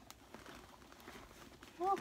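Faint handling of a leather camera bag as its pockets are opened: soft rustling with a few light clicks.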